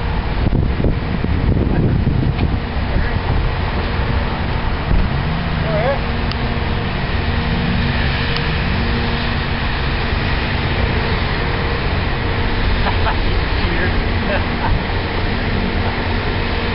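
Steady outdoor rumble of vehicle engines and traffic with a faint steady hum, and faint voices in the background.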